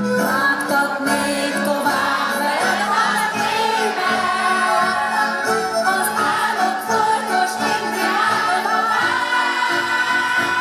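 A Hungarian folk band playing live: a woman sings lead over two fiddles and an accordion, with a double bass keeping an even beat underneath.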